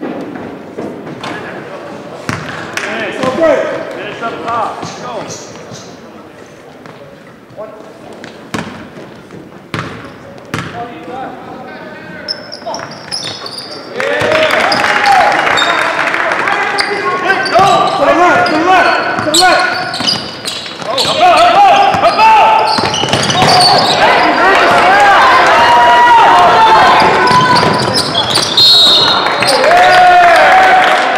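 Basketball being bounced on a gym's hardwood floor, with scattered knocks during the first half. About halfway through, many loud overlapping voices of players and spectators start shouting over live play and carry on to the end.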